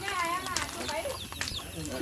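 People talking quietly, voices low and broken.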